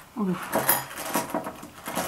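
Jelly beans clicking and rattling against a bowl as fingers sort through them, in a quick run of small clicks, with a brief falling vocal sound just after the start.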